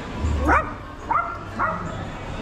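A little yappy dog yapping three times: a rising yelp about half a second in, then two short, higher yips about a second and a second and a half in.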